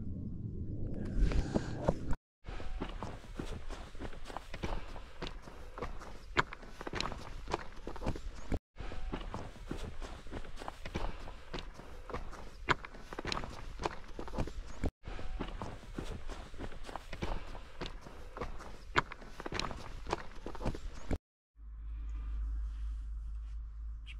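Footsteps of a hiker walking down a mountain path, a steady run of step impacts, broken by brief silent gaps where short clips are cut together.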